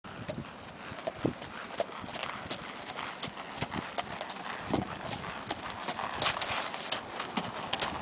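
Hoofbeats of a ridden chestnut Quarter Horse gelding on a packed gravel lane: a steady run of sharp strikes, several a second.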